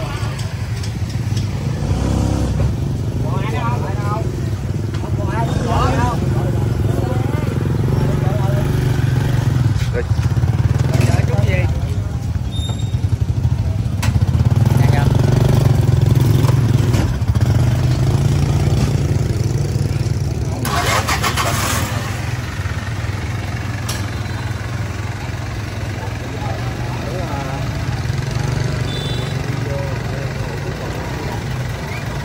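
A vehicle engine running steadily, a low hum throughout, with people talking over it.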